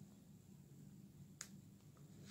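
Near silence: room tone, with one faint click about one and a half seconds in.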